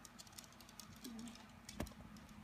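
Light fingertip taps on a tablet touchscreen: a quick run of faint clicks, with one sharper click near the end.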